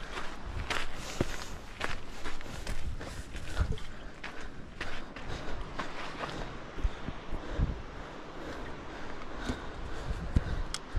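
Footsteps on a gravelly dirt and rock trail, coming unevenly while walking uphill, picked up close by a chest-mounted camera.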